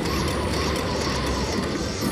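Slot machine sound effect of the cartoon wolf huffing and puffing: a steady rushing blast of wind over the game's music, as the wolf blows apart the house symbols on the reels to reveal their prize values.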